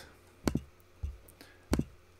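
Three sharp computer-mouse clicks: one about half a second in, a softer one about a second in, and one near the end.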